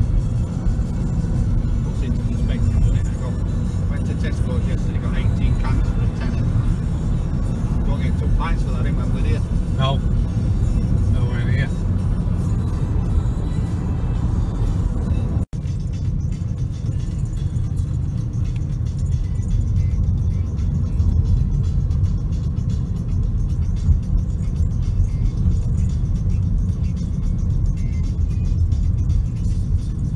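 Steady low road and engine rumble heard inside a moving car, with faint voices and music underneath. The sound drops out for an instant about halfway through.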